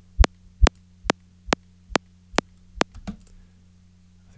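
Synthesized kick drum playing on a loop, a little over two hits a second. The first two hits carry a deep low end; the later ones are mostly a short, sharp click with little bottom.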